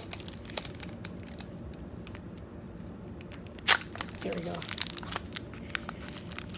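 Foil Pokémon booster pack wrapper crinkling in the hands and being torn open, with many small scattered crackles and one louder crackle a little past halfway.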